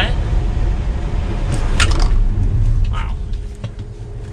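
Cabin road and tyre noise of an electric Tesla Model 3 Performance braking hard from 40 mph on a wet track: a steady low rumble with a hiss from the wet road, fading toward the end as the car slows.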